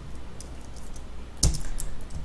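Computer keyboard keystrokes: a few faint taps, then a sharper key press about one and a half seconds in, followed by several quick lighter taps.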